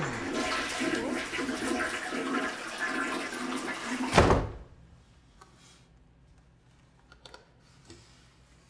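A loud rush of gurgling water for about four seconds, like a toilet flushing, cut off by a heavy thud. After that it is quiet except for a few faint clicks.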